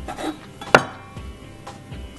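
A kitchen knife cutting through soft rice cake on a cutting board: a brief scraping slide, then one sharp knock of the blade on the board a little under a second in. Soft background music plays underneath.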